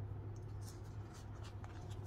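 Sticker sheets being handled on a desk, giving a few faint, brief paper rustles and scrapes over a steady low hum.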